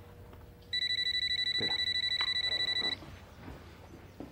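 Telephone ringing once: a high electronic trilling ring lasting about two seconds, starting just under a second in.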